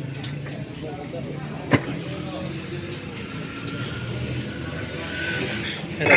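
A motor vehicle engine running steadily, with one sharp knock about two seconds in.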